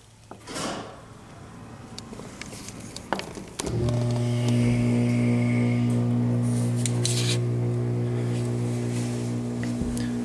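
Hydraulic elevator's pump motor starting with a click about three and a half seconds in, then running with a steady hum as it drives the telescoping ram to raise the car. A few faint clicks come before it.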